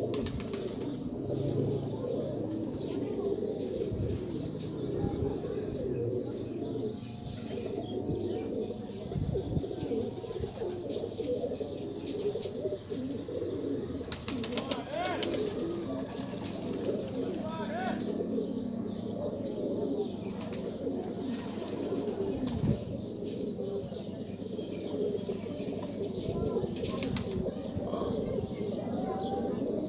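Domestic pigeons cooing continuously, many birds at once, with a short patch of small clicks and rustles about halfway through.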